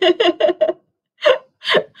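A person laughing: a quick run of short laughs, then after a brief pause two more gasping laughs.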